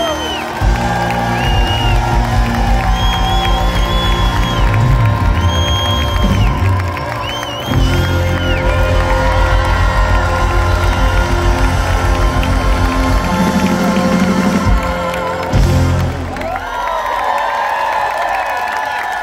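Live rock band playing loud through a stadium concert PA, with heavy pulsing bass and a large crowd cheering along. The band stops about sixteen seconds in and the crowd keeps cheering.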